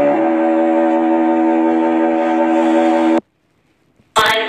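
Classical music holding a sustained chord, cut off abruptly about three seconds in, followed by dead silence as the radio stream switches channels.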